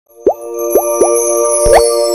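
Animated logo intro sting: three quick bubble-pop sound effects, each rising in pitch, then a longer rising swoop with a low thump near the end, over a sustained bright chord with shimmering high notes.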